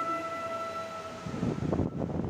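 Background flute music holding one long steady note, which stops a little past a second in and gives way to rough, uneven low rumbling noise.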